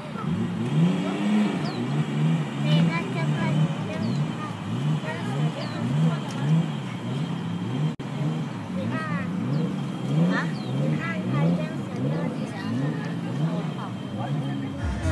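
Nissan Skyline R34 GT-T's turbocharged RB25DET straight-six revved over and over, each rev rising quickly and dropping back, about one every three-quarters of a second.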